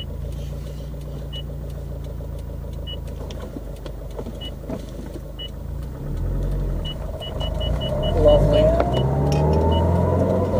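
2013 Subaru WRX STI's turbocharged 2.5-litre flat-four through a Milltek cat-back exhaust, heard from inside the cabin, running low while pulling away and getting louder as it accelerates from about six seconds in. Near the end a whine rising in pitch comes in over the exhaust: driveline whine that the owner puts down to stiffer suspension bushings.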